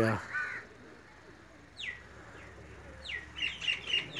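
A bird calling overhead: two quick high calls that drop steeply in pitch, one about two seconds in and one about three seconds in, then a fast run of short chirps near the end.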